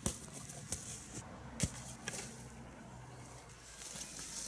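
A football thudding down onto grass and plants about one and a half seconds in, among a few lighter knocks and rustles, over a faint low hum.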